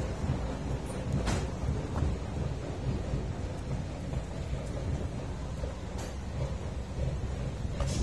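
Steady low outdoor rumble, with a few faint ticks about a second in, around six seconds and near the end.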